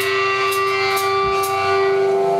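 Live metal band holding a sustained, ringing electric-guitar chord, with cymbal crashes about twice a second: a song's held closing chord.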